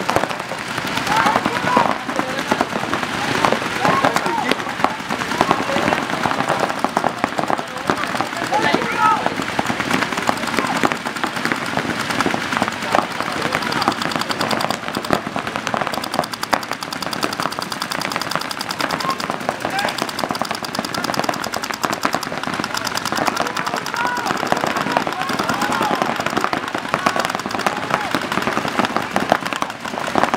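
Paintball markers firing rapid, continuous strings of shots, with voices shouting over them.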